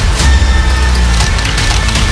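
Cinematic trailer music built from sound design: a heavy sustained bass drone with dense, crunchy mechanical clicks and hits over it. A thin steady high tone runs through it.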